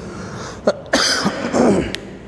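A man coughing: a short burst a little after half a second in, then a longer cough from about a second in.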